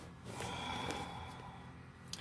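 A man breathing out through his nose close to the microphone: one soft, noisy breath that swells and fades about a second long.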